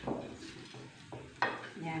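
Hands rubbing coarse salt over the skin of a whole raw duck, three short scrubbing strokes that each start sharply and fade.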